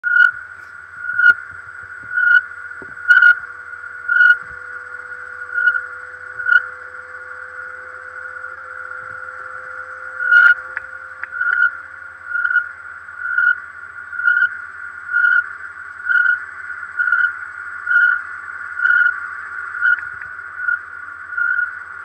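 A steady high electronic tone with a louder beep repeating about once a second, the beeps pausing for a few seconds midway, heard over a video-call connection with a faint electrical hum beneath.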